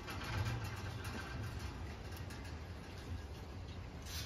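A faint, steady low hum, like a motor or engine running.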